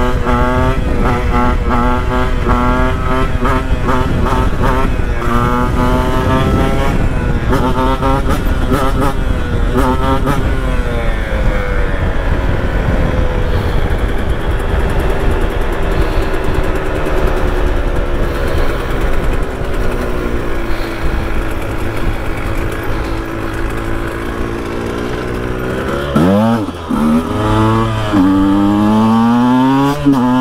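KTM 125 EXC two-stroke engine revving hard, its pitch climbing in quick repeated sweeps for the first ten seconds. It then holds one long, nearly steady note for about fifteen seconds while the bike is up on its back wheel in a wheelie. Near the end the note drops suddenly and comes back in sharp rising revs.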